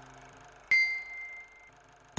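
A single bright bell-like ding about two-thirds of a second in, ringing for about a second as it fades. It sounds over the dying tail of a sustained music chord, as part of an electronic intro theme.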